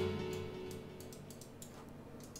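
The end of a synthesizer playback of a house melody with a bass line, its notes dying away in the first half-second, followed by a few faint clicks.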